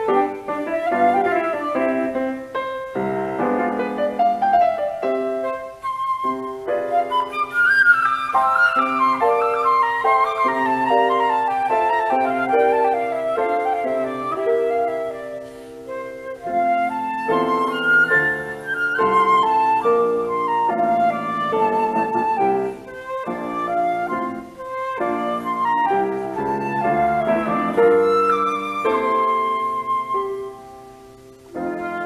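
Flute and piano playing a light classical piece, the flute carrying the melody over the piano accompaniment, with a briefly softer passage about halfway through.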